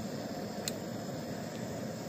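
Small propane-butane burner running under a beaker with a steady hiss. A single light click about two-thirds of a second in.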